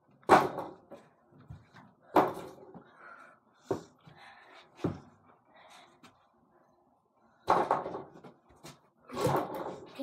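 A small ball hitting an over-the-door mini basketball hoop's backboard, rim and door, and bouncing on the floor: about six separate thumps and knocks, the last one near the end longer.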